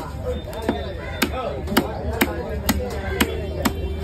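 Heavy cleaver chopping cobia into steaks on a wooden chopping block, a sharp chop about twice a second.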